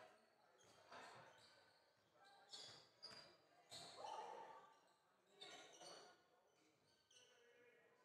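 Faint sounds of live basketball play on a hardwood court in an echoing sports hall: the ball being dribbled, short high sneaker squeaks, and players calling out, in several brief louder moments.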